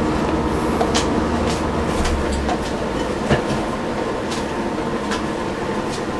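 Buttered bread rolls frying in a hot skillet: a steady sizzle with scattered small pops, over a low hum that stops about two and a half seconds in.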